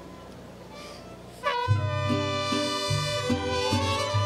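A mariachi band strikes up about one and a half seconds in, after a quiet moment. Trumpets and violins hold long, loud notes over a bass line that moves in short, rhythmic steps.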